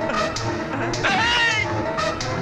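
Film background music with a steady beat. About a second in, a brief high, wavering cry rises and falls over it for about half a second.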